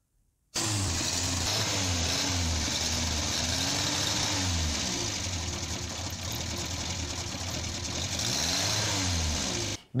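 A car engine running, its pitch rising and falling a few times as it is gently revved. It starts about half a second in and cuts off suddenly just before the end.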